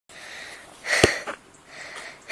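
Breath sounds close to the microphone: soft breaths, then a louder, sharp sniff about a second in.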